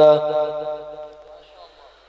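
A man's melodic Arabic recitation of the opening praise over a microphone and loudspeakers ends its phrase just after the start. Its echo then dies away over about a second and a half to near silence.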